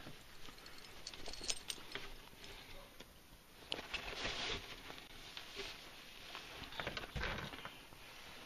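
A large dog moving about and being handled: scattered soft clicks and rustles, a brief rush of noise about four seconds in, and a dull thump near the end.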